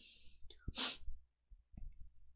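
A short, sharp breath noise from a man, a quick exhale or sniff about a second in, preceded by a faint hiss and a small mouth click.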